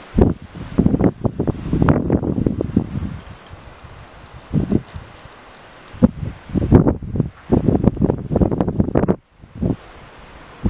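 Wind buffeting the camera microphone in loud, irregular low rumbling gusts: two spells, the first in the first three seconds and the second from about six seconds in, with a quieter steady hiss between.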